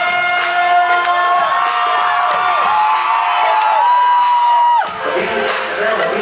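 Live rock band with violin playing loudly in a concert hall, with the crowd cheering and whooping over it. A long held note breaks off about five seconds in and the band carries on.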